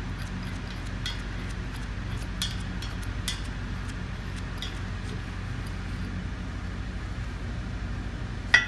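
Metal tool working a bolt on the pump's mechanical seal, giving four or five sharp, irregular metallic clicks in the first few seconds. A steady low hum runs underneath.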